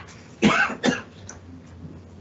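A person coughing twice in quick succession, about half a second in.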